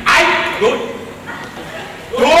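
A person imitating a dog on stage: a sudden loud bark-like cry, then a short rising yelp about half a second in, fading away.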